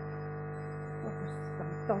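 Steady electrical mains hum, a set of even droning tones at constant level, with no speech over it.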